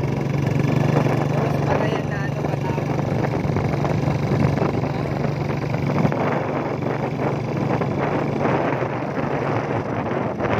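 A vehicle's engine running steadily with wind and road noise as it drives along, a constant low hum under the rush.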